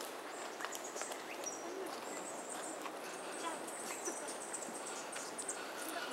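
Outdoor bushland ambience: brief high bird chirps scattered through, with light clicks and rustles and faint voices in the background.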